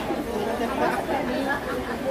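Indistinct chatter of several people talking, with no single clear voice.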